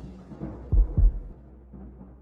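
Two deep bass thumps about a quarter second apart, a sound-design hit in a logo sting, over the fading tail of the closing music.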